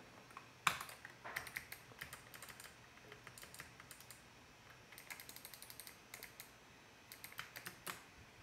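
Computer keyboard typing, faint, in quick runs of keystrokes separated by short pauses.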